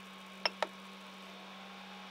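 Ender 3 V2 3D printer's rotary control knob pressed to start PLA preheating: two quick clicks about a fifth of a second apart, the first with a brief high chirp, over a steady low hum.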